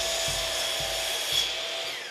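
Compound miter saw running with a steady high whine as its blade is brought down into a laminated wood strip. Near the end the motor is switched off and winds down, its pitch falling.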